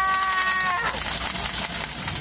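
A man's long scream held on one pitch, cutting off just under a second in, followed by steady background noise.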